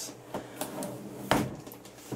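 A large cardboard gift-set box being handled on a tabletop: a few light scrapes and taps, then one sharp knock about a second and a half in as the box is turned and set down on its side.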